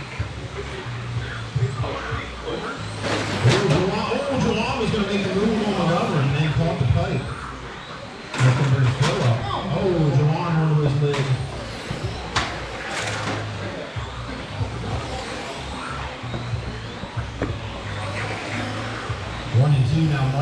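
Electric radio-controlled touring cars racing round an indoor track, their motors whining, with a few sharp knocks. Background music and voices in the hall are heard over them.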